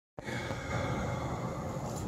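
Steady, fairly quiet room noise of a small venue after a brief moment of silence at the very start.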